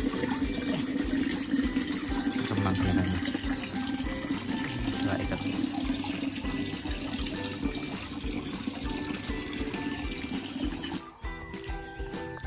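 Steady sound of water moving in a shallow tub of water holding a pair of tilapia, under background music. The water sound drops away suddenly near the end.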